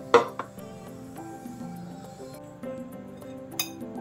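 A ceramic bowl clinking against a wooden cutting board as sliced cucumber is set into it: one sharp clink just after the start and a smaller one near the end, over background music.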